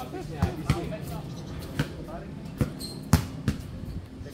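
Basketball bouncing on an outdoor hard court: about six separate thumps at irregular intervals, the loudest about three seconds in.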